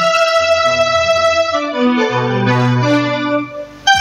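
Keyboard music: sustained electric-piano chords over low bass notes that change every half second or so. It dips away briefly near the end, then a sharp hit brings in a beat.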